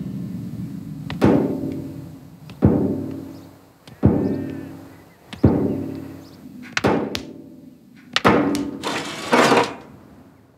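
A ball thudding against the inside of a metal coal bin, four hits evenly about a second and a half apart, each ringing briefly. Near the end comes a quicker run of knocks and clanks.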